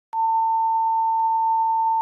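A single steady electronic beep tone, one unbroken high pitch that switches on abruptly just after the start and holds level.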